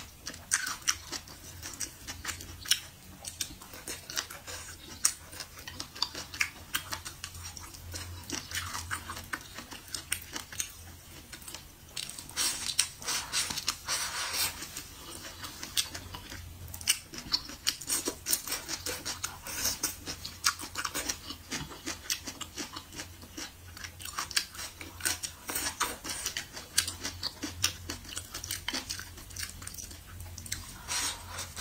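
Close-miked chewing of mouthfuls of food: wet smacking with many sharp clicks all through, and a louder, noisier stretch about twelve to fourteen seconds in.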